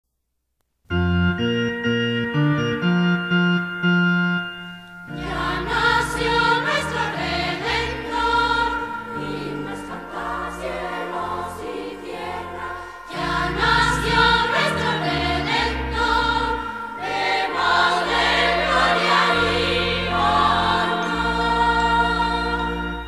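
Christmas choral song: after a second of silence, an instrumental opening of held chords changing every second or so, then about five seconds in a choir comes in singing over a bass line and accompaniment.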